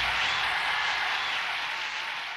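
A soft, hiss-like wash of sound with no beat or melody, slowly fading out as the soundtrack ends.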